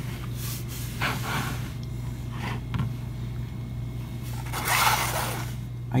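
A person breathing audibly close to the microphone: a few soft breaths, the longest and loudest about five seconds in, over a steady low hum.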